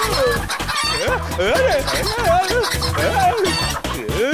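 Cartoon rooster clucking and squawking in a string of calls, over background music.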